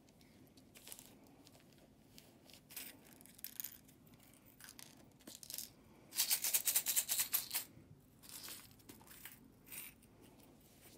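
Plastic egg shaker filled with beads and other small items being shaken: a few light clicks first, then a dense, fast rattle lasting about a second and a half past the middle, and two shorter rattles after it.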